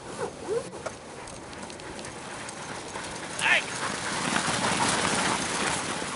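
A sled dog team and sled rushing close past on packed snow: a hiss of runners and paws that grows louder over the second half. A few short calls come in the first second, and a single sharp high cry a little past halfway is the loudest moment.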